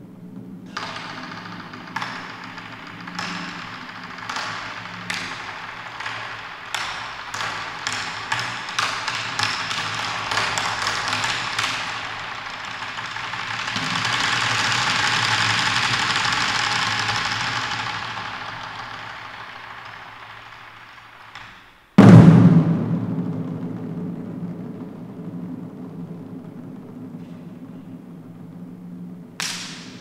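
Chinese drum ensemble playing: sharp stick strikes speed up from about one a second to a rapid run. They merge into a roll that swells and fades. After a brief hush, one very loud massed hit comes about 22 seconds in and rings away.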